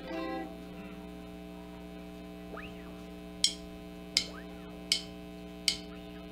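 Steady mains hum through the PA. A brief guitar note sounds at the start, then four sharp, evenly spaced taps about three-quarters of a second apart count in the song.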